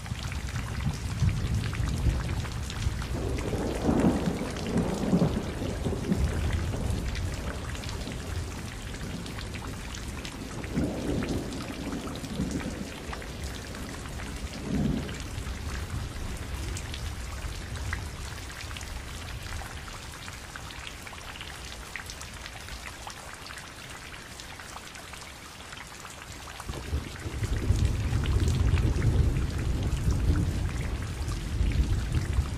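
Steady rain with low rolling thunder, the rumble swelling in the first few seconds and building again near the end.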